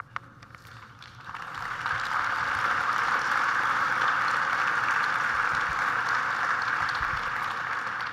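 Large audience applauding: the clapping swells in about a second in, holds steady, and eases slightly near the end.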